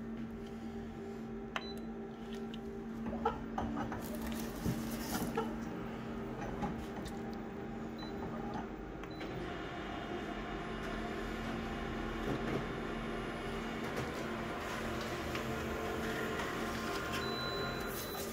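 Colour office photocopier running a copy job: a steady hum with a few clicks during the first half, then a louder, fuller whirring from about halfway as it prints the page.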